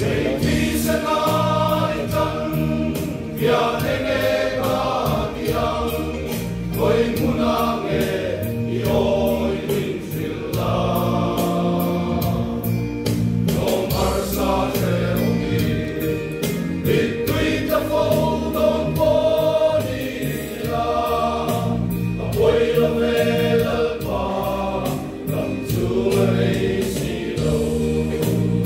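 Men's choir singing a gospel hymn together, the sung lines running without a break.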